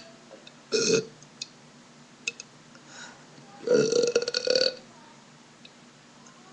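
A boy burping twice: a short burp just under a second in, then a longer, rough burp near four seconds.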